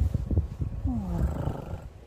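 Low thumps and rubbing on the microphone as the phone is pressed and moved against a cat's fur, then a low, drawn-out vocal sound whose pitch falls over about a second.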